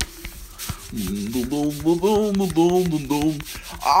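Scratchy rubbing noise with scattered clicks, and about a second in a person's voice humming a run of short, level notes that stop shortly before the end.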